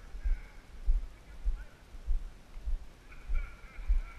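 Footsteps of someone walking, heard through a body-worn camera as dull low thumps about every half second. A faint, steady high tone is held briefly at the start and for about a second near the end.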